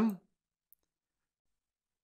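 The tail of a spoken word, then near silence broken once by a single faint computer-mouse click, about three-quarters of a second in.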